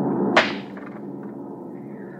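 Steady drone of an airliner's propeller engines, a radio-drama sound effect. A single sharp knock comes about half a second in, after which the drone continues more quietly.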